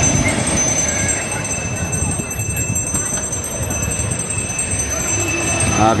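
Surf breaking and washing over the shallows, with the voices of a crowded beach mixed in.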